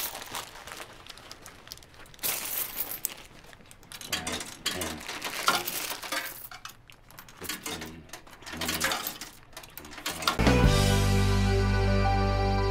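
Coins clinking as they are handled and dropped into a vending machine, with scattered clicks and knocks of the machine. About ten and a half seconds in, loud music starts abruptly and covers the rest.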